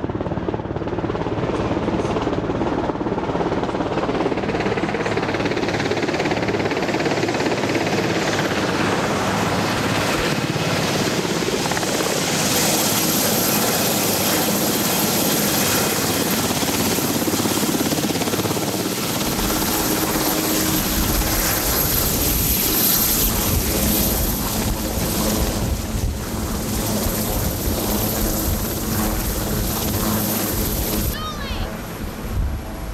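Marine One, a Sikorsky VH-3D Sea King helicopter, running loud and close. Its noise builds partway through, with a deeper rotor rumble joining after about twenty seconds.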